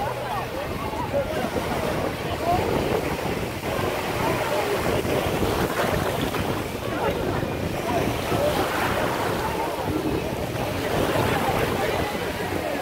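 Small waves washing onto a sandy shore, with wind buffeting the microphone, and faint indistinct voices in the background.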